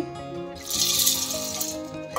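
Roasted chickpeas poured from a bowl into a stainless-steel mixer-grinder jar, rattling against the metal for about a second, starting a little under a second in. Background music plays under it.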